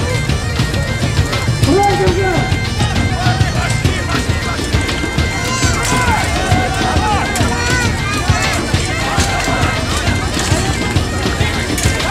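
Bagpipes playing, with a steady drone under the tune, over a crowd of voices talking and calling out and scattered clatter.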